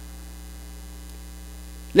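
Steady low electrical mains hum with no other sound, until a man's voice begins right at the end.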